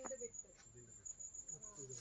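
An insect trilling: one steady, high-pitched, finely pulsing tone, with faint voices briefly underneath.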